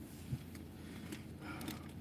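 Quiet car cabin: a faint steady low hum with a single soft knock about a third of a second in.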